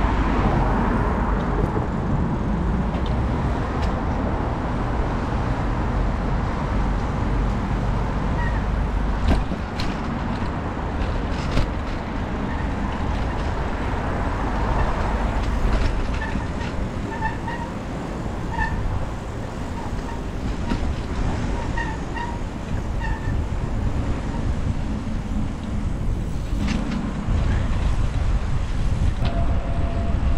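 Steady wind and rolling noise on the microphone of a camera riding along on a bicycle. A few faint, short chirps come through about halfway in.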